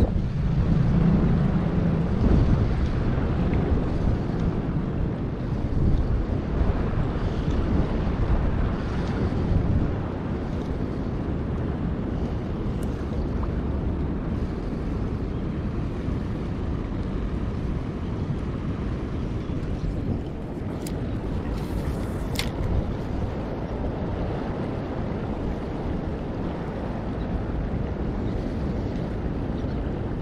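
Wind buffeting the microphone over the wash of river water, gusty for the first ten seconds and steadier after; two brief high ticks about two-thirds of the way through.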